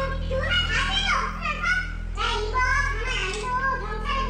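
A high-pitched voice speaking agitatedly in Korean, saying things like "Are you crazy?" and "I won't let this go, I'll report it to the police." A low steady hum runs beneath it.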